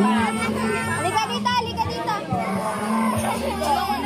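Children's voices chattering and calling out all at once over background pop music.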